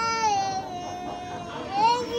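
Toddler crying in a long, drawn-out wail that falls slightly in pitch, then a second wail rising near the end.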